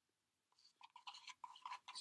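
Faint wet scraping of a wooden tongue-depressor stick stirring a muddy mix of Ultracal gypsum cement and water in a mixing cup: a quick run of short strokes that starts about half a second in.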